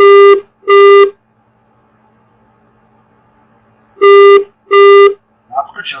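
A telephone ringing tone heard down the line, loud beeps in two pairs, each pair a double ring about four seconds after the last. The called line is ringing unanswered.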